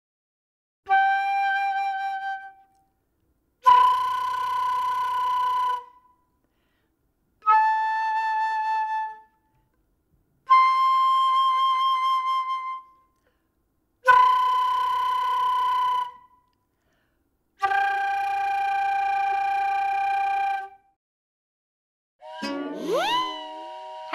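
Concert flute playing six separate held notes, each two to three seconds long with short gaps between them, some flutter-tongued (the tongue rolled for a fluttering buzz) and some played plain. Near the end a voice begins.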